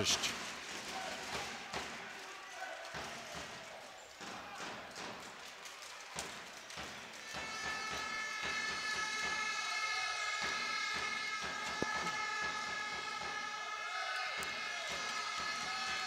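Basketball game sound in an arena: a ball bouncing and a few sharp knocks on the court, with crowd noise. About seven seconds in, a steady high-pitched drone of several held tones starts and keeps on.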